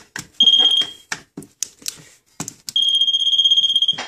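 Hydrosensor II moisture meter on a probe pole giving a steady high beep: a short beep about half a second in and a longer one from near three seconds on, the meter's signal that the drywall it touches is wet. Between the beeps come a series of sharp clicks and taps.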